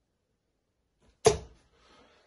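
A steel-tip dart striking a Winmau bristle dartboard once, about a second and a quarter in: a single sharp thud that dies away quickly. The dart is fitted with an L-Style spinning carbon stem and an orange flight.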